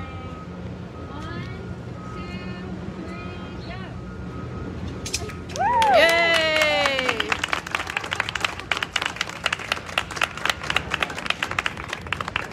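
A small crowd cheering and applauding the cutting of a ribbon: a loud whoop that rises and falls about halfway through, then clapping.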